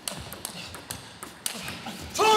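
Table tennis rally: a quick series of sharp clicks as the ball is struck by the rubber-covered bats and bounces on the table, a few times a second.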